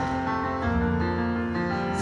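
Grand piano playing held chords on its own, moving to a new chord about half a second in.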